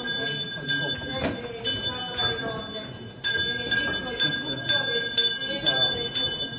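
Bells ringing in a quick, even peal, struck about twice a second with a bright ringing, pausing briefly about halfway through. A murmur of voices lies beneath them.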